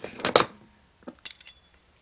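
Small metal toy gyroscope clattering on a hard tabletop. A few sharp knocks come first, and about a second later a second clatter follows with a short high metallic ring.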